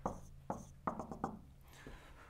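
Marker pen writing on a whiteboard: a quick series of short strokes and taps as digits are written.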